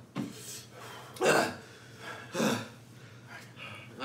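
A man's sharp coughs, three of them about a second apart with the middle one loudest, brought on by the chili burn of extra-spicy instant ramen.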